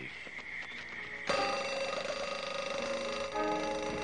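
Mechanical alarm clock bell ringing, loud and continuous. It starts suddenly about a second in.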